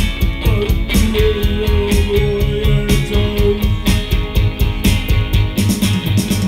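Live indie rock song: electric guitar played over a steady beat, with one note held from about a second in to past the middle.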